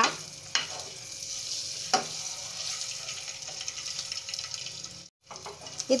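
Whole boiled eggs frying in a little hot oil in a pan, with a steady light sizzle. A metal spoon turning the eggs gives a couple of sharp clicks against the pan in the first two seconds.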